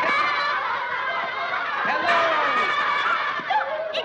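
A group of people laughing and chuckling, several voices overlapping at once.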